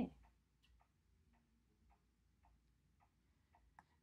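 Near silence with a scattering of faint, light ticks from a stylus tapping and drawing on a tablet's glass screen.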